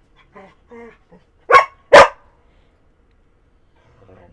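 A pet dog barking twice, two loud sharp barks about half a second apart, roughly a second and a half in.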